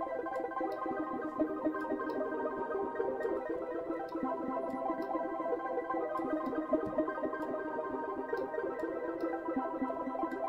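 Dense cascade of randomized plucked synth notes from FL Studio's Sytrus, run through delay and reverb so they blur into a steady, many-note chord: the 'twinkling' effect.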